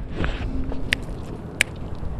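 Finger snaps counting in the tempo before an a cappella song: three sharp snaps about two-thirds of a second apart, over outdoor background noise.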